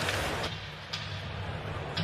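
Ice hockey arena ambience: steady crowd noise with a few sharp knocks from play on the ice.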